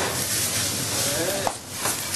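A whole grouse searing in oil and butter in a very hot frying pan, sizzling steadily as it is browned before roasting, with a brief dip in the sizzle about one and a half seconds in.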